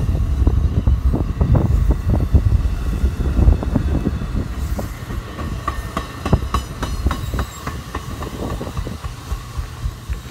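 NJ Transit multilevel passenger cars rolling past, their wheels clicking over the rail joints above a heavy low rumble. The rumble eases about halfway through as the last car pulls away, leaving lighter clicks.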